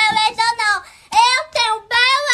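A young girl singing in a high voice in short phrases, with a brief break about halfway through.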